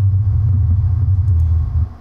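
A loud, steady deep rumble that cuts off suddenly near the end.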